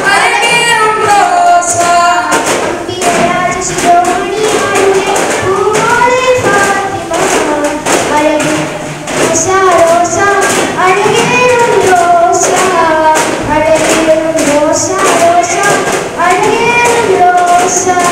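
A group of boys singing in chorus to a steady beat of duff frame drums.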